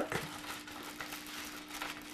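Soft crinkling and rustling of a plastic baggie and paper being rolled up and handled by hand.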